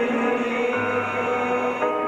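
A band playing a slow passage of long, held chords, with a low bass note coming in underneath a little under a second in and the chord changing near the end.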